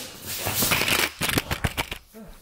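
A camera being dropped, heard through its own microphone: a quick run of knocks, rattles and scuffs as it tumbles and lands. The fall damaged the camera's lens.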